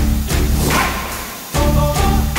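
Background music with sustained chords over a heavy bass beat, with a strong hit at the start and another about a second and a half in.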